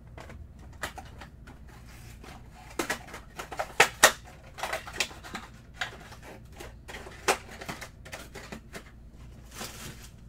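Cardboard trading-card hobby boxes being handled and opened: a run of irregular taps, scrapes and rustles of cardboard, loudest about three to four seconds in.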